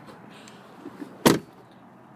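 The rear passenger door of a 2015 Jeep Grand Cherokee SRT8 being swung shut, closing with a single solid thud about a second and a quarter in.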